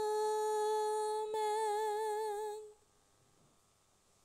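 A sung "Amen" closing the opening prayer: one long held note with a slight vibrato that stops about three seconds in.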